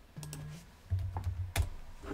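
Computer keyboard keystrokes and clicks as a stock ticker is typed in, with the sharpest click about one and a half seconds in. A short low hum runs between the clicks.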